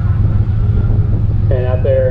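Camaro engine idling steadily with a low, even hum. An announcer's voice comes in near the end.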